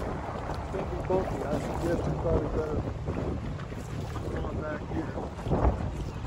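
Small outboard motor running steadily on an inflatable dinghy underway, with wind buffeting the microphone.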